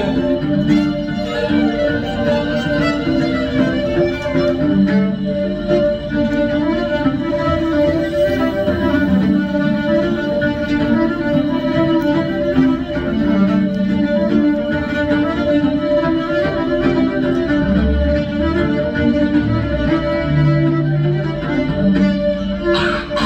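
A fiddle playing a tune, its notes changing continuously over a steady held tone.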